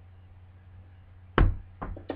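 A book set down on a desk: a loud sharp thump about one and a half seconds in, then a lighter knock, over a low steady hum.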